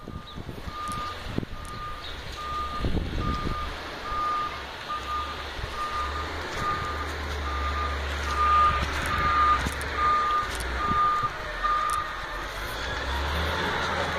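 A vehicle's reversing alarm beeping at one steady pitch, a little more than once a second, over the low hum of a running engine. The beeping stops near the end.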